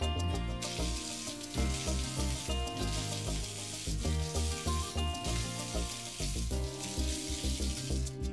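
Water running from a chrome bath mixer tap, a steady hiss that starts about half a second in and stops shortly before the end, under background music with a rhythmic bass beat.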